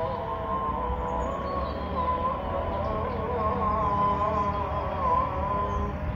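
A long, wavering pitched sound, like a distant voice holding a melody, over a steady low rumble.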